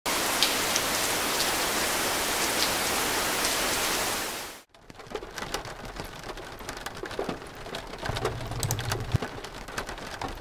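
Steady heavy rain that cuts off suddenly about four and a half seconds in. Fainter rain with scattered drops and crackles follows, with a short low rumble about eight seconds in.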